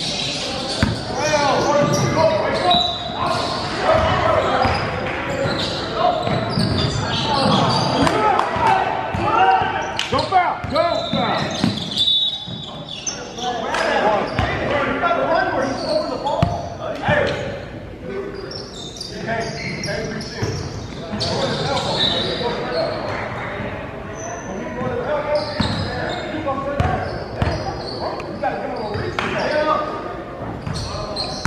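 Basketball bouncing on a hardwood gym floor during play, mixed with steady voices of players and spectators, all echoing in a large gymnasium.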